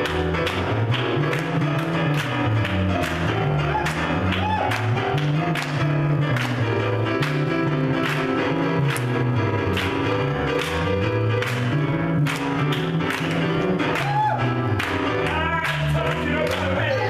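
Upbeat gospel instrumental on electric keyboard and electric guitar, with a moving bass line and chords, and hand claps keeping a steady beat.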